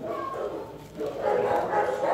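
Dogs barking and yipping, a run of short calls.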